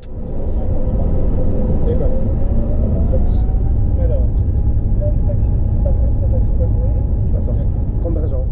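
Inside the cockpit of an Airbus A350 rolling on the runway for an automatic take-off: a loud, steady low rumble of the engines and the run along the runway, with faint voices over it.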